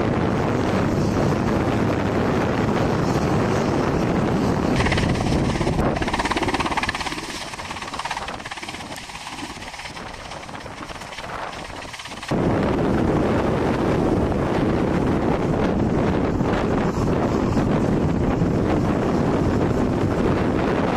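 Wind buffeting the microphone, a steady low roar. It falls to a quieter stretch about seven seconds in and comes back abruptly about twelve seconds in.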